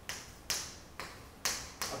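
Chalk tapped against a chalkboard about five times, roughly half a second apart, each a sharp tap that fades quickly, as dots are marked in a row.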